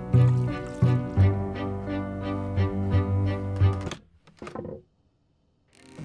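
Music with low string notes pulsing in a steady rhythm, breaking off about four seconds in. A short sound follows, then about a second of silence before the music comes back near the end.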